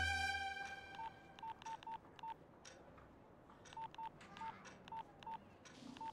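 Short electronic beeps from a mobile phone, all at one pitch, in two uneven runs of five and six, as the music before them fades out.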